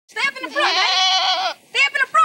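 Goat bleating: one long quavering bleat of about a second, with shorter calls or voices before and after it.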